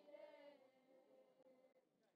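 Near silence, with a faint voice holding a note that fades away.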